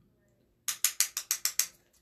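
A quick run of about nine sharp clicks, starting under a second in and lasting just over a second, about seven a second.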